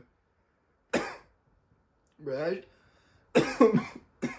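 A man coughing: one sharp cough about a second in, a short voiced throat sound, then a louder run of several coughs near the end.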